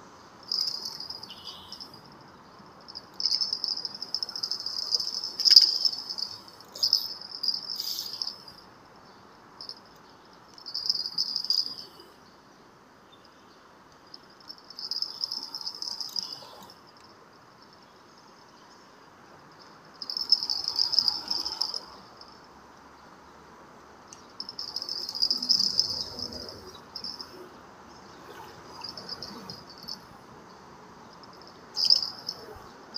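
Insects calling in about nine high-pitched bursts, each from under a second to a couple of seconds long, separated by short quiet gaps.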